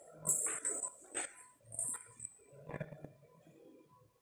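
Faint, high bird chirps several times, with a few soft taps and low knocks in between.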